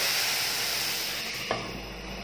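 Diced capsicum, tomato and onion sizzling in oil in a nonstick kadai, the sizzle dying down about a second in. A single knock about a second and a half in as a glass lid is set on the pan.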